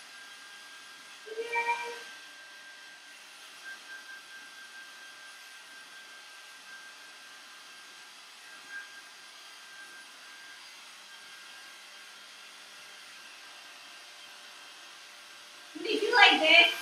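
Handheld hair blower running steadily and faintly, with a thin high whine in its hum. About a second and a half in, a brief pitched call rises above it.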